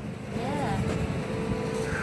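Go-kart engine running steadily, a low rumble with a held engine note, with a brief voice about half a second in.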